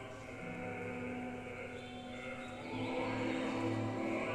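Orchestra in rehearsal playing long held chords, growing louder and fuller about three-quarters of the way through.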